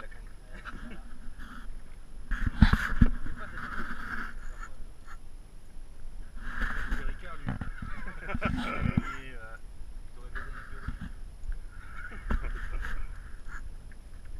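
Spinning reel's drag squealing in short bursts as a hooked bluefin tuna pulls line against it, with a few sharp knocks, strongest about 3 s in and near the end.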